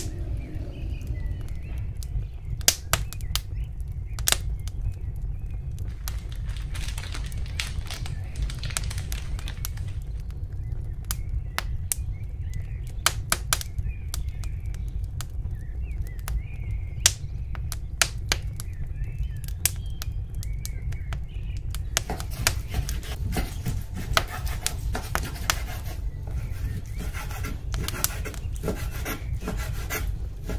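Scattered clicks and taps of food and kitchen things being handled over a steady low hum. The clicks come more often in the last several seconds.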